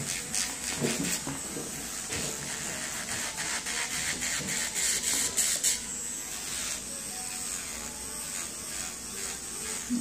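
Electric nail drill with a carbide bit running and filing a false nail tip: a steady high whine of the small motor, with scratchy grinding as the bit works the nail for the first six seconds, then a smoother run.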